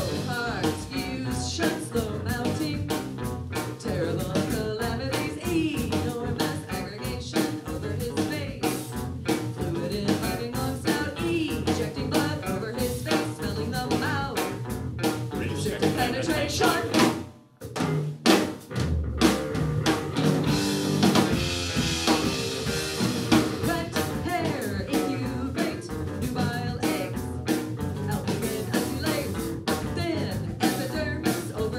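Live rock band playing a song: electric guitar, electric bass and drum kit, with singing. The band stops dead for a moment about seventeen seconds in, then comes straight back in.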